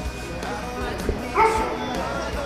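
A dog barks once, about one and a half seconds in, over background music and low voices.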